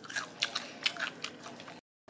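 Crunchy food bitten and chewed close to the microphone: a quick series of crisp crunches, cut off suddenly just before the end.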